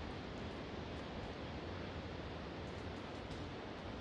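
Steady, even rushing background noise with a low rumble underneath and no distinct events.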